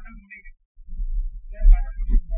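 Laughter close to the microphone, coming in choppy bursts with heavy low thumps, with a brief break about half a second in.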